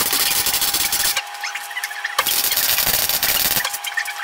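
Electric arc welding on steel: two crackling welds of a second or so each, the first stopping about a second in and the second starting just after two seconds and stopping near the end. A steady hum is heard in the gap between them.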